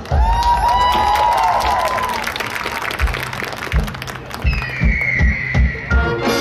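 A marching band cuts off at the end of a phrase and the stadium crowd cheers and applauds. A few seconds in, low bass drum strokes start and a single high held note enters, leading back into the full band.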